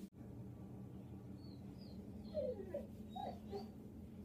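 A dog whining faintly in a few short, high, rising-and-falling whines in the second half, the excited whining of a dog shut in a room.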